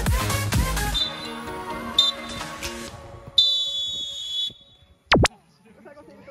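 Electronic dance music cuts off about a second in, leaving field sound. A referee's whistle gives a short blast, then a second and a half later a longer blast: the full-time whistle ending the match. Near the end comes a very brief sweep in pitch, down and back up.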